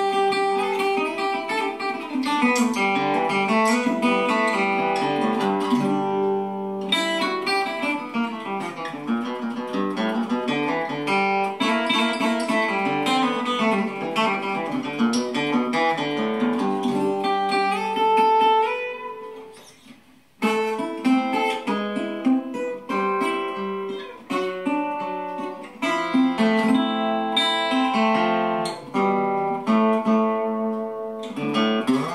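Regal RC-51 nickel-plated brass tricone resonator guitar, strung with used 13–56 phosphor bronze strings, being picked in a steady run of notes. About 18 seconds in a note rings out and fades almost to nothing, and the playing starts again about two seconds later.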